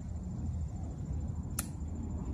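A single sharp metallic click about one and a half seconds in, the heel click of a Tomb of the Unknowns sentinel's metal-plated shoes as he turns, over a steady low outdoor rumble.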